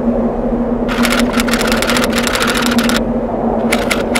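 Rapid typewriter-style clicking sound effect as on-screen text types out: a run of about two seconds starting about a second in, and another starting near the end, over a steady low hum.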